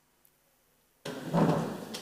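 Near silence for about a second, then a sudden burst of knocking and rustling, loudest about half a second after it starts: handling and bumping noise picked up by a table microphone as a panellist stands and leans over the table.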